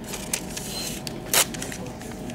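A printed ECG rhythm strip being handled and torn off at the cardiac monitor's strip printer: a few soft clicks, then one sharp paper snap a little over a second in.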